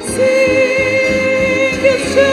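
A hymn sung to violin orchestra accompaniment: after a short break right at the start, a long held sung note with light vibrato, moving to the next note near the end.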